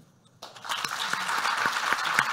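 Audience applauding, starting about half a second in and building to a steady, dense clatter of clapping.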